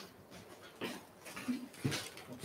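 Soft footsteps and a few light handling knocks as a handheld microphone is carried across a wooden parquet floor, in an otherwise quiet room.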